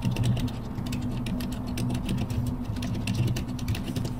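Computer keyboard typing: a quick, steady run of key clicks that stops near the end.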